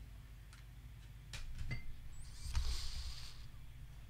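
Plastic CD jewel cases being handled: a few light clicks, then a short scraping slide with a soft thump about two and a half seconds in.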